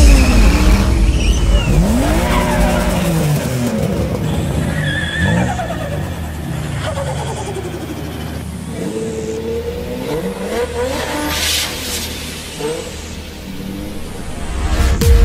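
Car engine revving hard, its pitch rising and falling again and again, with tyre squeal from a car drifting in tight circles around a barrel.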